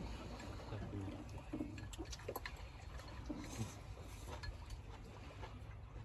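Chopsticks and a ladle clicking and clinking against small porcelain bowls and a steel pot during a meal, a sharp tap every second or so, over a low steady rumble.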